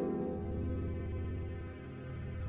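Tense, dark background score: low sustained bass notes under slow held chords.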